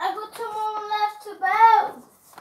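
A child singing a wordless tune: one held note, then a louder note that swoops up and back down near the end.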